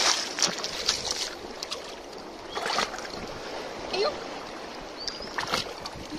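Feet in plastic sandals splashing through shallow seawater over rocks: a few splashes in the first second, then single ones near the middle and near the end, over a steady hiss of water and wind.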